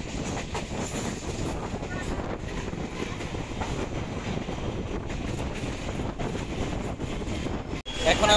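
Suburban electric local train running along the track, heard from its open doorway: steady running noise of wheels on rails with a rapid patter of clicks. It cuts off suddenly just before the end.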